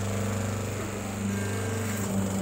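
Electric motor of a semi-automatic hydraulic paper plate making machine running with a steady low hum.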